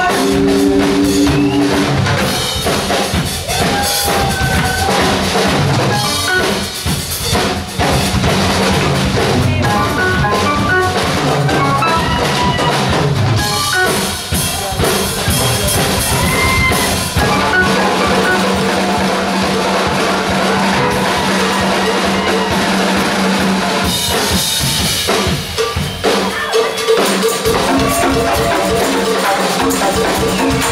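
Live band playing with the drum kit to the fore, kick and snare hits running throughout over bass and guitar.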